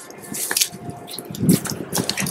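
Footsteps squelching on wet slush and snow: a few steps in short, uneven bursts, with a click about half a second in.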